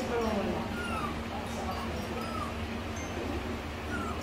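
A four-week-old kitten mewing several times in short, thin, high cries as liquid dewormer is squirted into its mouth from an oral syringe.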